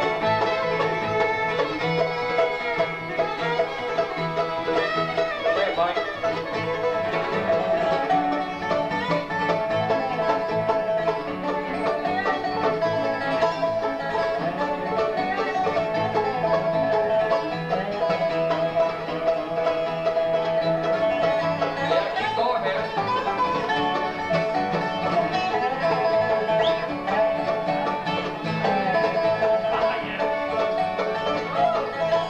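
Acoustic bluegrass band playing an instrumental break with no singing: a fiddle leads at first, then a dobro (lap-played resonator guitar) takes the lead, over steady banjo and guitar backing.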